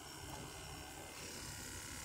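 Faint, steady buzz of a small battery-powered aquarium air pump running.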